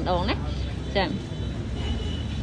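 Short bursts of a person talking near the start and about a second in, over a steady low background rumble.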